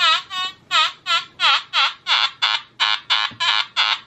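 Nokta Makro Anfibio Multi metal detector giving its low 'grunt' tone, about three short tones a second, each dipping and rising in pitch. The tone break is set at 70 in Gen Delta all-metal mode, so target signals below 70 come through as this lower, gruntier tone.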